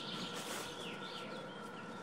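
Faint birdsong: a few short, falling chirps in the middle, over a light background hiss.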